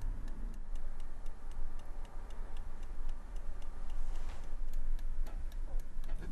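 Small alarm clock ticking steadily, about four ticks a second, over a low hum.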